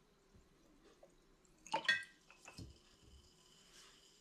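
Glass bottles knocked as the siphon tube is moved between them: a quick cluster of clinks about two seconds in, the glass ringing on afterwards, then a couple of softer knocks.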